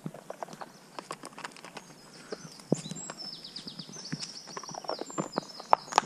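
Irregular cracking and snapping of dry twigs and leaf litter as a dog moves about among fallen sticks on grass, with a few sharper snaps. High, quick falling chirps run in the background from about halfway.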